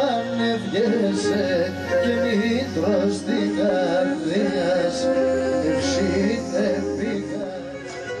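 Live Pontic Greek folk music: a Pontic lyra (kemençe) playing a wavering, heavily ornamented melody, with a male voice singing.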